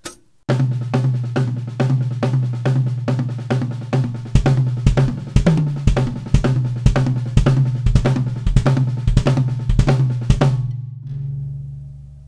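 A Tama drum kit played in a fast gospel-style groove on snare, hi-hats and cymbals, with the bass drum working the pattern stretched out between the hands. Heavier bass drum strokes join about four seconds in. The playing stops about ten seconds in and the kit rings out.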